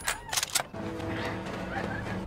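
Film soundtrack mix: a few short, sharp clicks, then from under a second in a steady held tone of several pitches over a low rumble.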